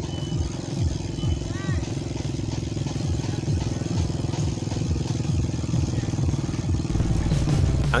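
Mountain bike rear wheel spinning as the cranks are turned by hand: the chain runs over the cassette and the Venus sealed-bearing three-pawl freehub ticks as the wheel coasts. It makes a fast, even clicking buzz that dies away near the end.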